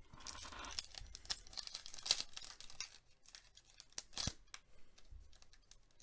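A hockey card pack wrapper being torn open by hand, crinkling in short irregular crackles, the sharpest about two and four seconds in.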